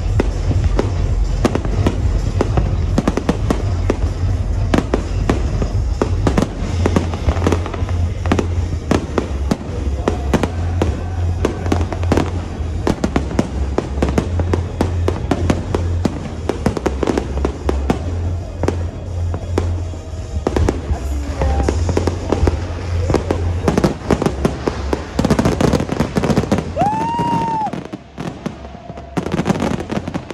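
Fireworks display: a dense, rapid run of bangs and crackles from many shells bursting, over music with a steady bass. Near the end a short whistle rises and falls, and the bursts thin out.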